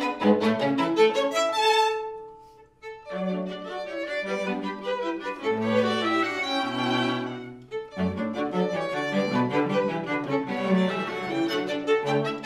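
String quartet of violins, viola and cello playing classical music. The playing fades almost to nothing about two seconds in, then starts again a second later and goes on.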